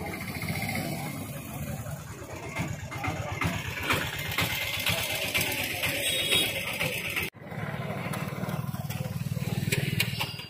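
Outdoor rumble and noise, with a sudden break about seven seconds in, after which a steady low rumble continues.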